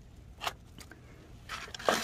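Hands working succulent rosettes into gritty potting soil: a faint rustle of grit, a short click about half a second in, and a brief scrape near the end.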